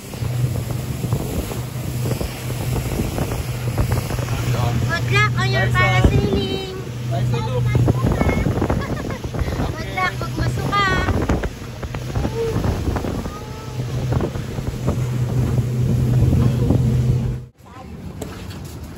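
A small motorboat's engine running with a steady low drone, under wind rushing on the microphone and the wash of water. Voices call out now and then, and the sound cuts off abruptly near the end.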